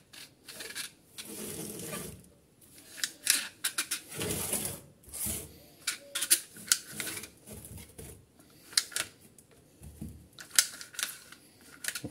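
Plastic recoil starter of a Kawasaki engine being handled while its spring rewinds a new starter cord: the cord rubs through the housing in several scraping bursts, amid scattered sharp plastic clicks and knocks.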